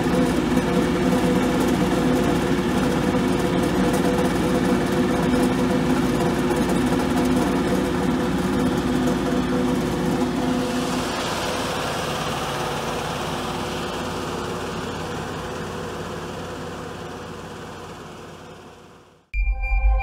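Steady running noise of a Telestack radial stacker's conveyor and power unit, with a held hum, working loaded at about 440 tonnes per hour. It fades away over the second half. Electronic music starts just before the end.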